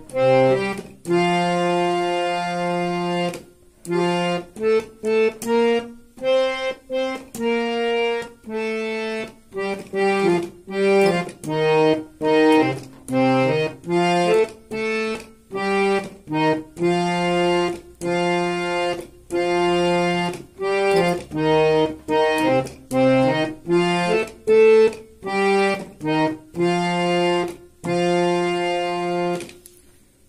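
A harmonium plays a Nepali lok dohari melody one note at a time, in short phrases with brief gaps between the notes.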